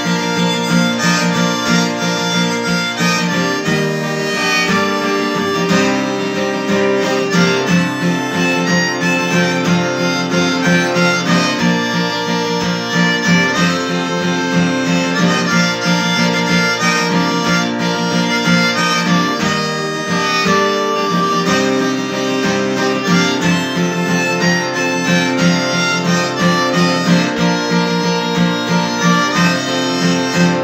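Harmonica playing a tune over steadily strummed acoustic guitar, both played by one musician.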